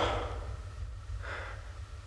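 A low steady hum, with a faint click at the start and a soft breath about a second in.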